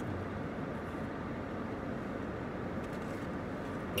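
Steady, even background rumble inside a car's cabin, with no distinct events.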